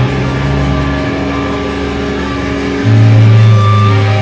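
A live metalcore band with distorted electric guitars and bass holding sustained, ringing chords, with no drum hits. A louder low chord comes in near the three-second mark.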